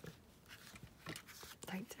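Faint rustling and light taps of paper scraps being pressed down and handled by hand.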